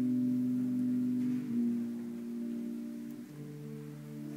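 A choir holding soft, sustained low chords, changing chord twice.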